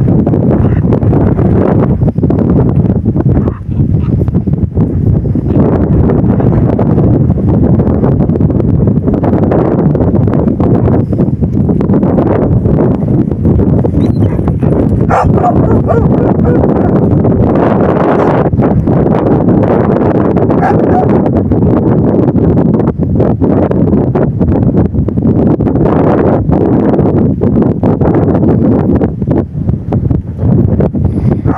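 Heavy wind buffeting the microphone throughout. Dogs are heard over it at times, barking and yipping.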